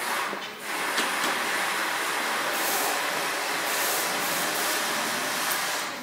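A loud steady hissing, rushing noise that starts about half a second in and stops shortly before the end, with brighter surges of hiss partway through.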